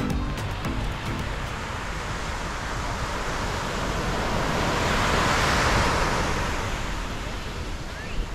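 Ocean surf breaking and washing up a sandy beach, a rushing wash that swells to its loudest a little past the middle and then eases off. Background music fades out about a second in.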